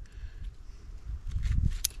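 Hands working a nylon strap and a metal D-ring: low rumbling handling noise with a few faint clicks in the second half and a brief metallic tick near the end.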